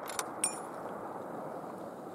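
Metal clicks from the bolt-action 300 Winchester Magnum rifle being handled after the shot, one with a short high ring about half a second in, over a steady hiss of wind.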